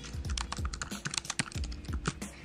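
Typing on a computer keyboard: a quick, uneven run of keystrokes as a short message is entered.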